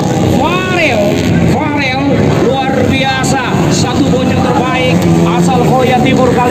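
Motocross dirt-bike engines revving up and falling back again and again as the bikes run the track, with a steady rumble of engine noise beneath.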